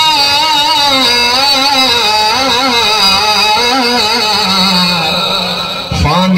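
A man's voice chanting in long, drawn-out melodic notes with wavering ornaments, the pitch stepping down and settling into a low held note about four and a half seconds in.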